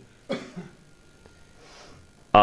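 A person's single short cough about a third of a second in.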